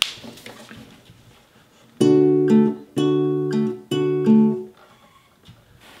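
Acoustic guitar playing a D-major shape at the fifth fret: the A and B strings plucked together, then the D string alone, repeated three times about a second apart, starting about two seconds in.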